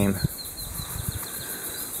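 Outdoor background in a pause between words: a low rumble of wind on the microphone with faint, high insect chirps.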